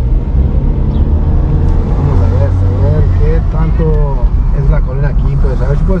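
Low rumble of a car on the move, with people's voices talking over it through the second half.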